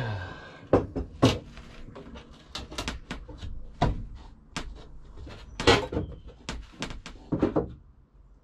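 Plywood panel being pushed and knocked into place against the inside of a van's side wall: a run of irregular wooden knocks and bumps, with a few louder thumps about 1, 4, 6 and 7½ seconds in.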